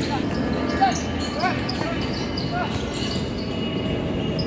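Basketball game on a hard court: sneakers squeak sharply a few times, and the ball bounces, with one sharp hit just under a second in. Players' voices run underneath.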